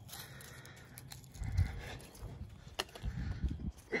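Footsteps on a wooden deck with camera handling noise: a few low, irregular thuds and light clicks.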